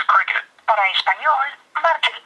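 Recorded voice from the 611 carrier service line coming over the HTC Evo 4G's speakerphone, in a thin, telephone-narrow tone, in short phrases with brief pauses. Reaching this line shows the flashed phone is working on the Cricket network.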